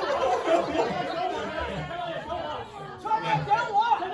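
Several people talking over one another, with a clearer single voice coming through near the end.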